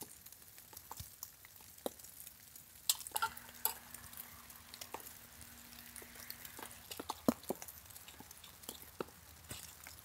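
Scattered light clicks and knocks of small sticks of fatwood being handled and dropped into a small wood-burning stove. A faint steady hum runs for a few seconds in the middle.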